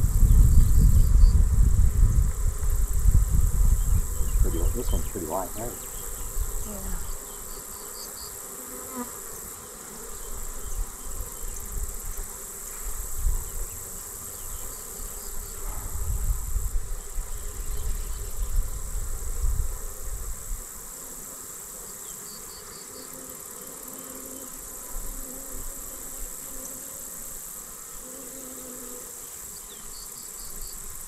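Honeybees buzzing around an open hive while its frames are lifted out. A low rumble sits under the buzzing for the first several seconds and again around the middle.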